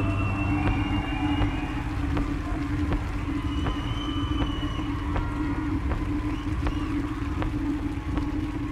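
Slow, droning live rock from a guitar, bass and drums band: a steady low drone with sustained, slowly bending electric guitar tones above it and soft clicks at an even, slow pulse.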